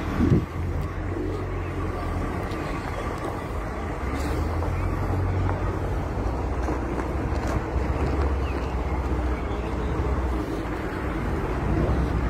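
Steady low rumble of outdoor street noise: vehicle engines and wind on the microphone. There is a short knock near the start.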